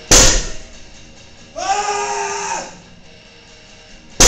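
A loaded barbell with iron plates thuds down on the gym floor once, right at the start, during heavy deadlift reps. About a second and a half in, a held pitched tone sounds for about a second.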